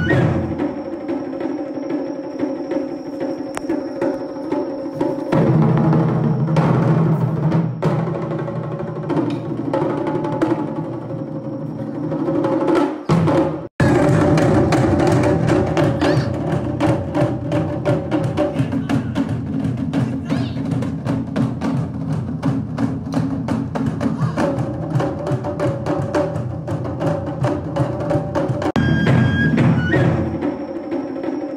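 Japanese taiko drum ensemble playing a dense, driving rhythm on barrel drums and a large drum. The sound cuts out for an instant about 14 s in, then the drumming carries on.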